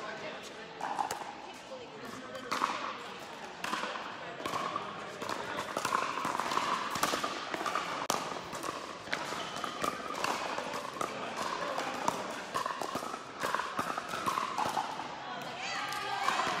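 A pickleball rally: paddles strike the hollow plastic ball, with sharp pops about once a second, mixed with the ball bouncing on the court. It echoes in a large indoor hall, with voices murmuring in the background.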